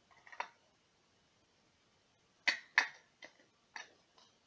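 A few sharp clicks and knocks from a small thin plastic cup as a bouncy ball is pushed down into it: a short cluster soon after the start, two louder clicks a third of a second apart about halfway through, then two fainter ones.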